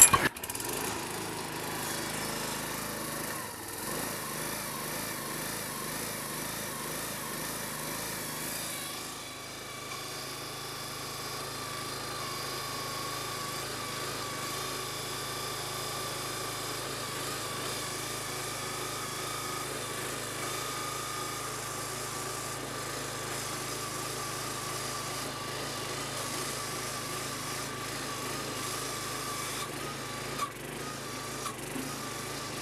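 Huskee 22-ton log splitter's small gas engine running steadily just after starting, its note changing about nine seconds in. From then on a steady whine from the hydraulic pump runs under it as the splitting wedge is driven down.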